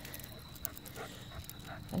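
A leashed dog on a walk making a few faint, short sounds, with light clicks from walking on asphalt.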